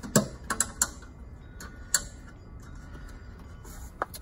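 A handful of sharp, light clicks and taps, about five in the first two seconds, from propane tank hardware being handled and refastened.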